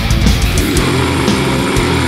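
Old-school death metal band playing: distorted electric guitars, bass and drums. Fast drum strokes give way about half a second in to held guitar notes.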